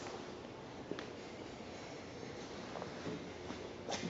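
Quiet room tone with a faint steady hiss and a light click about a second in, then two fainter ticks near the end.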